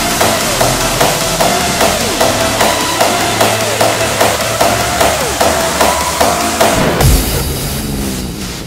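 Hardstyle dance music: a four-on-the-floor kick drum about two and a half beats a second under a high synth lead. Near the end a heavy low hit lands, the beat drops out and the music starts to fade.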